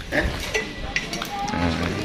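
Background din from a loud PA sound system, mixed with indistinct voices, with no clear foreground sound.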